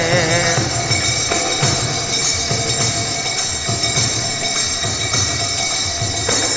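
Temple arati music between sung lines: a continuous metallic ringing of bells and hand cymbals, with irregular drumbeats underneath. A sung note trails off about half a second in.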